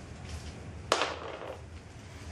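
Handling noise of a freshly peeled sheet of Monokote covering film, with one short sharp snap or crackle about a second in.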